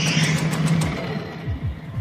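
Film score music over low mechanical sound effects for a large robot: a steady low hum, then several short low whirs that fall in pitch in the second half.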